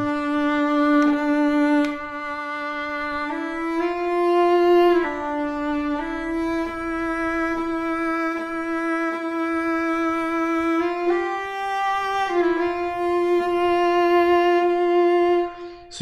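Sampled solo viola from Native Instruments' Cremona Quartet (the Amati viola) playing a slow line of about six long held bowed notes. The bow changes direction mid-note, triggered by the bow-change articulation.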